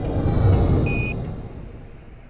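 Logo-sting sound effect: a deep whoosh that swells to a peak about half a second in and then slowly fades, with a brief high tone about a second in.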